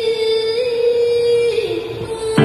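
Live band music with keyboard and electric guitars: a long held melody note that bends up slightly, then slides down about a second and a half in.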